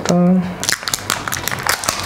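Plastic protective film on a new smartphone crinkling and crackling as it is peeled and handled: a quick run of irregular sharp crackles from about half a second in.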